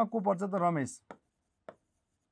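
A man's voice speaking for about a second. Then two faint short taps of a pen on the writing board as he writes.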